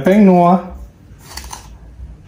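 A voice says a short word, then about a second and a half in comes a brief scratchy rustle as white seasoning is shaken from a small spoon into a stainless-steel mixing bowl.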